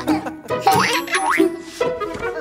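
Children's cartoon music with two quick rising cartoon sound effects, one after the other, a little under a second in.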